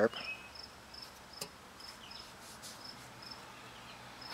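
Faint insect chirping: a short, high note repeating evenly about two to three times a second, with a single sharp click a little over a second in.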